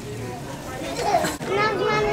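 A toddler babbling, with high-pitched, wordless vocal sounds in the second half.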